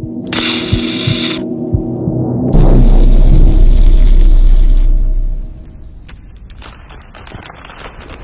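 Logo-animation sound effects over held music chords: a hiss about a second long near the start, then a loud deep boom lasting about three seconds, then scattered sparkling crackles that fade out.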